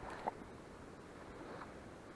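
Faint steady outdoor background hiss, broken by one brief sharp knock about a quarter of a second in and a fainter short sound around a second and a half, from handling of the spinning rod and camera.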